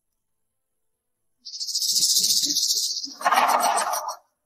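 A high, fast-pulsing shimmer sound effect of about a second and a half, added as the jewellery box is opened. It is followed about three seconds in by a shorter, lower rush of noise.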